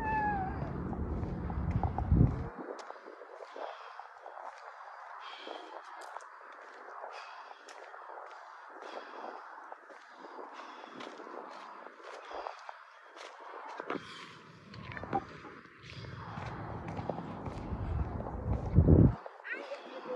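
A small dog whining, with high gliding whimpers at the start and faint repeated whines after. Bursts of low rumble on the phone's microphone come near the start and again late on, and they are the loudest sound.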